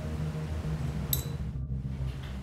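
A porcelain gaiwan lid clinks once about a second in, with a short bright ring, over a steady low hum.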